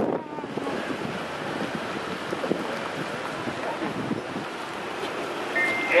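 Motorcade cars driving slowly past, a steady rush of engine and tyre noise with wind on the microphone.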